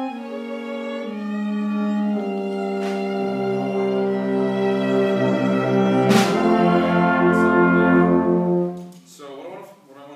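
Instrumental ensemble playing slow, sustained chords under a conductor. The sound grows fuller as a low bass line comes in about three seconds in, then the ensemble cuts off about a second before the end.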